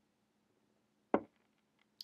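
A beer glass set down on a hard surface: a single sharp knock about a second in, followed by a few faint ticks.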